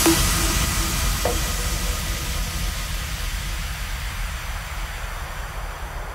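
The closing tail of an uplifting trance track: after the beat and melody cut off, a wash of white noise over a deep rumble fades slowly away.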